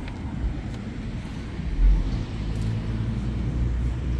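Street traffic rumble, a steady low drone of road vehicles, swelling briefly about two seconds in.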